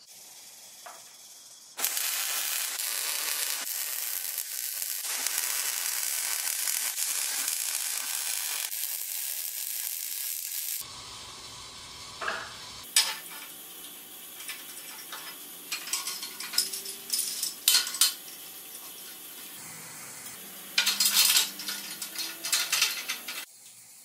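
A welding arc sizzling steadily for about nine seconds, then cutting off abruptly. After that, steel parts and slotted strut channel clink and rattle as they are handled and fitted together, with several sharp clanks and a louder burst of rattling near the end.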